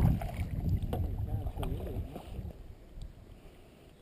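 Kayak paddling in calm water: the paddle splashing and dripping over a low rumble that dies away, with a couple of light knocks, until it is nearly quiet near the end.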